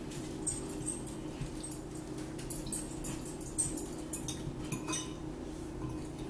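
Metal fork clinking and scraping against a ceramic bowl of pasta, with close-up eating sounds: many small irregular clicks and a few brief ringing clinks over a low steady hum.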